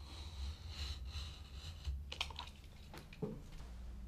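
Utility knife cutting wallpaper along a straight edge at the ceiling line: faint scratching with small clicks, and a few sharper clicks about two seconds in.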